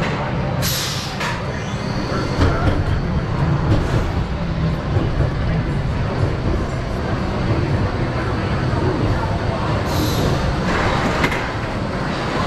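Iron Gwazi's Rocky Mountain Construction hybrid coaster train rolling slowly along the final brake run into the station, with a steady low rumble of wheels on track. Brief hissing bursts come about half a second in and again near the end.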